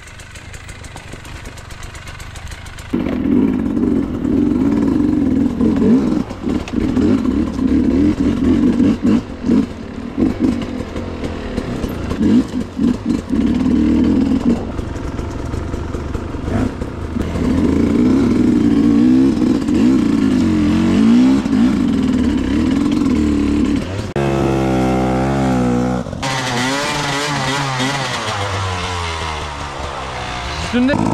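Enduro dirt-bike engines revving hard and unevenly under load on a steep climb, the pitch rising and falling as the throttle is worked. The engine noise jumps up in loudness about three seconds in, and near the end a closer engine gives a higher, wavering whine.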